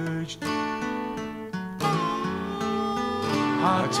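Song music: a Gibson J-50 acoustic guitar strummed under a held melodic note that comes in about halfway, between sung lines.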